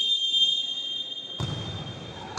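Referee's whistle blown in one long, steady, high-pitched blast.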